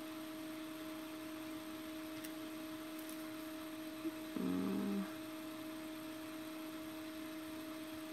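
Steady low electrical hum in a small room, with a brief hummed note from a voice about four and a half seconds in, just after a small click.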